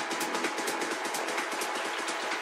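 Techno from a DJ mix with no kick or bass: a steady buzzing synth layer with hi-hat ticks about four a second, the ticks fading out near the end.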